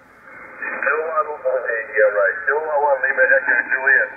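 A man's voice received on lower sideband, heard through the Yaesu FTdx5000MP transceiver's speaker: narrow, muffled shortwave audio with the highs knocked down by the LSB carrier insertion point set to −200 Hz. Near the end the setting goes back to zero and the upper voice range sounds brighter.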